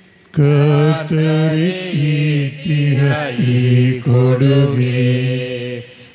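A man's voice singing a slow Kannada hymn, phrase by phrase, in long held notes with gliding turns between them.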